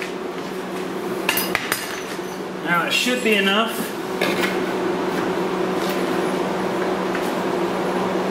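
Light metallic clinks and knocks as tools and metal are handled at a freshly hole-sawn opening in a car's body panel, over a steady low hum. A short voice sound comes about three seconds in.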